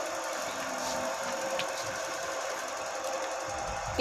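Steady background hum with a faint constant tone: the room tone of the shop.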